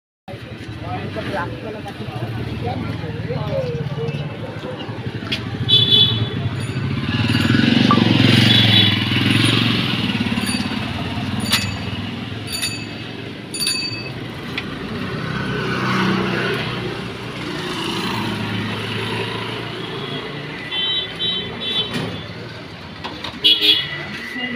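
Busy street traffic with a steady rumble of motorcycles and other vehicles and a background babble of voices. Short horn toots sound about six seconds in and again near the end, and a few sharp clicks come around the middle.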